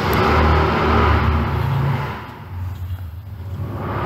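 A low rumbling noise that swells and then fades about two seconds in.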